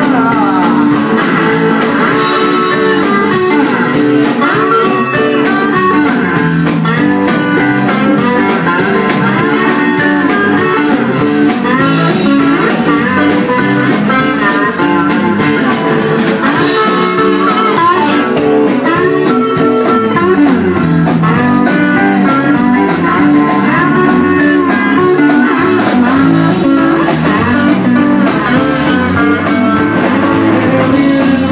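Live band playing blues on electric guitars over a drum kit, with wavering, bending guitar lead lines and steady cymbals throughout. The passage is instrumental, with no singing.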